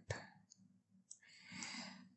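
Mostly quiet, with a single faint computer-mouse click right at the start and a soft rush of noise near the end.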